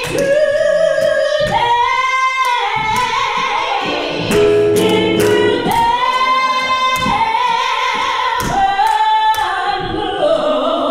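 Singing in a gospel style, a high voice holding long notes of about one to two seconds each and sliding between pitches, with a fuller, lower passage near the middle.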